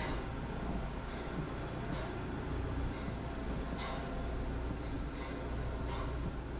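Steady low machinery drone in an underground mine, with faint regular steps about once a second.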